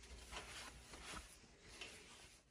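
Near silence with a few faint, soft rubbing sounds: fingers spreading engine oil over the cylinder wall of a Honda D16Y8 engine block.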